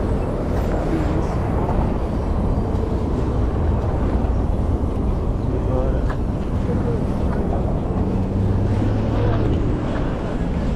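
Street noise from road traffic and wind rumbling on the microphone, with indistinct voices of people walking ahead.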